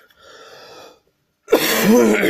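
A man draws a faint breath, then coughs loudly about one and a half seconds in.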